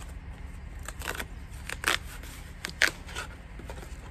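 A cardboard parcel being handled and torn open by hand, heard as a series of short, sharp rips and rustles. The loudest come a little before two seconds and near three seconds in.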